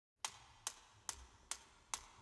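Five sharp, evenly spaced clicks, a little over two a second, like a count-in just before music starts.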